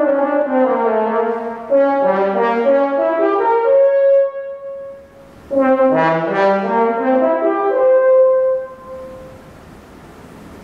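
French horn playing a melody in two phrases, each climbing from low notes to a held high note. There is a short break about five seconds in and another near the end, where the sound dies away.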